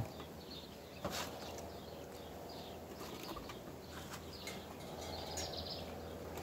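Faint bird chirps over a quiet outdoor background, with a single knock about a second in as rotten wood is dropped into a metal bee smoker.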